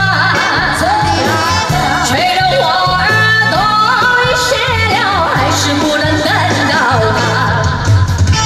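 Live amplified pop music: a woman singing a sliding, wavering melody into a microphone over a band with a steady, repeating bass line.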